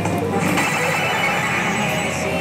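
Pachislot machines' electronic tones and jingles, the one being played (Basilisk Kizuna) up close among the pachinko hall's constant, loud din of other machines. Several steady electronic tones sound over one another without a break.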